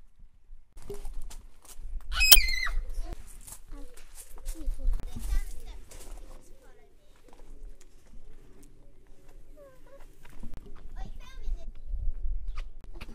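Children's voices and calls, with a short high-pitched squeal falling in pitch about two seconds in, over a low rumble and scattered knocks of wind and handling on the microphone.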